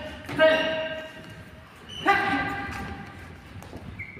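Two loud wordless shouts from a man, one near the start and one about two seconds in, each held and then fading over about a second, with echo from a large hall.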